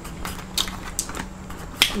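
Close-miked eating sounds from tortilla-chip nachos: a series of sharp, crisp clicks at irregular spacing, the loudest near the end.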